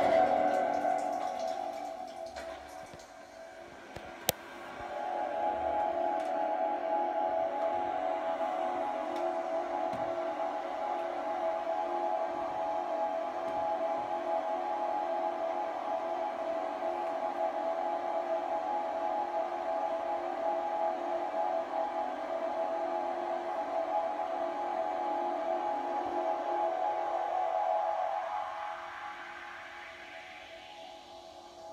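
Electronic ambient sounds played from a Native Instruments Maschine pad controller. A sound at the start dies away over about three seconds, and a sharp click comes about four seconds in. Then a steady drone with a low and a middle tone swells in and holds, fading out near the end.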